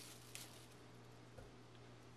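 Near silence: kitchen room tone with a low steady hum and one faint, brief rustle about a third of a second in.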